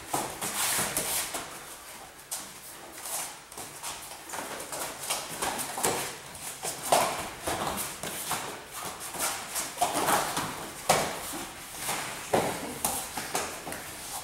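Grapplers' bare feet and bodies scuffling and thudding on foam mats in irregular knocks and scrapes, with a few short grunts during the scramble.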